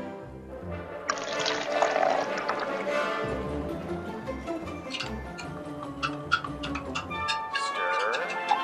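Water poured from a glass pitcher into a tall glass, starting about a second in and running for about two seconds, over background music.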